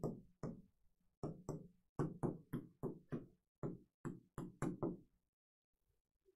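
Chalk knocking against a blackboard as letters are written: a quick, irregular run of sharp taps, about three a second, that stops about five seconds in.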